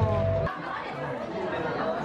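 Indistinct chatter of many diners talking at once in a busy indoor restaurant. It cuts in abruptly about half a second in, replacing louder outdoor sound with music.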